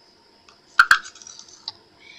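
A small spoon clicking against a small jar of crushed glass while scooping: two sharp clicks just before a second in, then a few light ticks and rattles of glass pieces.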